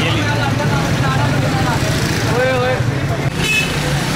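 A motorcycle engine runs steadily close by, under the overlapping chatter of a crowded market street.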